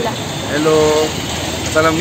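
Mostly a woman talking, with a drawn-out sound about half a second in, over a steady low hum of street traffic.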